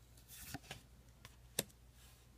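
Magic: The Gathering cards being handled as the front card is slid off the stack: a faint rustle, then a few soft clicks with one sharper click about one and a half seconds in.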